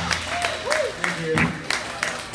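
Scattered clapping from a small audience, mixed with voices and a few shouts, right after a live song ends.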